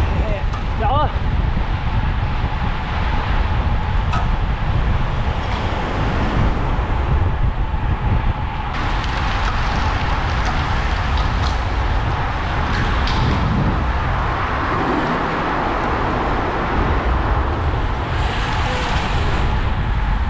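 Steady rush of wind on the microphone and tyre noise from road bikes riding fast in a group at about 40 km/h. The rush turns brighter and fuller about halfway through.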